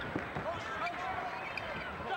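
A basketball being dribbled on a hardwood arena floor, with a steady murmur of the crowd and faint voices behind it.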